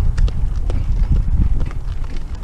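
A pony's hooves clip-clopping along a gravel track as it pulls a light carriage, a sharp click with each step over a steady low rumble.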